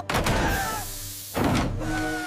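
Two bursts of cartoon steam hissing out of an overheated car, one right at the start that fades away and another about a second and a half in, over background music.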